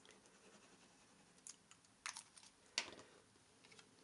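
Faint clicks and scrapes of a tape-runner adhesive dispenser drawn across cardstock and of the card being handled. There are a handful of short clicks, the loudest near three seconds in.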